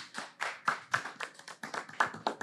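A small audience clapping, the separate claps distinct, about five a second.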